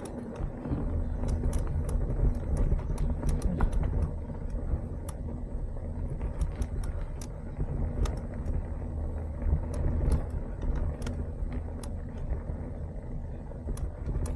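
Mountain bike rolling along a bumpy dirt path: a steady low rumble with frequent small clicks and rattles from the bike.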